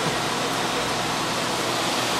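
Steady, even hiss of computer cooling fans running under a 3DMark06 benchmark load on an open overclocking test bench.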